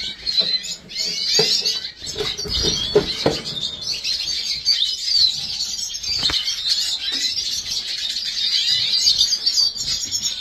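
Caged European goldfinches chirping and twittering without a break, several birds at once. A few knocks and rustles of paper handling come through in the first few seconds, and there is one sharp tap a little past the middle.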